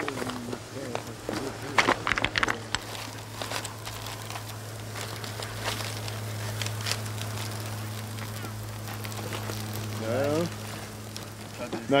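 Aluminium foil crinkling and rustling as foil-wrapped fish parcels are handled onto a metal grill grate over a campfire, with a cluster of sharp clicks and rattles about two seconds in. A steady low hum runs underneath, and there is a brief voice sound near the end.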